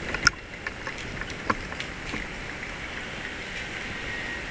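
Steady outdoor city-street noise, broken by a few short sharp clicks: the loudest about a quarter second in, another about a second and a half in.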